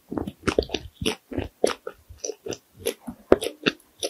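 Close-miked chewing: a person eating with the mouth closed, giving a quick, irregular run of short crunching clicks, several a second.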